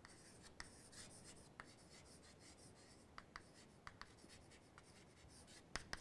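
Chalk writing on a chalkboard, faint: light scratching with scattered small taps as the chalk strikes the board.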